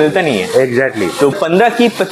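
A man talking, with no other distinct sound.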